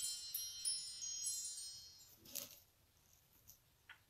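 Tail of a TV-show ident jingle: high, glittering chime tones fading out over the first two seconds, a short swish a little past halfway, then near quiet with a couple of faint ticks.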